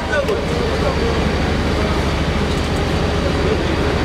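A loud, steady mechanical rumble with a fast, even low pulse, with faint indistinct voices under it.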